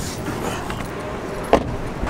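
Steady rushing road noise inside a moving car, with a single sharp click about one and a half seconds in.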